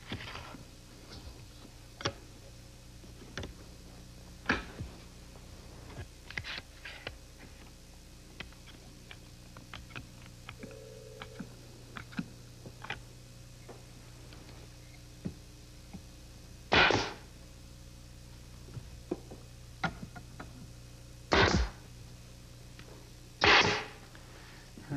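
Wooden frame parts being fitted and clamped together, with scattered light clicks and knocks, then nails being driven into the frame with three loud sharp impacts in the last seven seconds.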